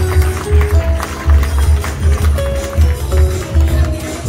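Upbeat dance music from a live band, with a strong pulsing bass beat, percussion strikes and a melody of held notes.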